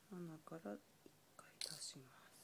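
Soft, low-voiced speech close to a whisper: a few short syllables, then a brief hiss near the end.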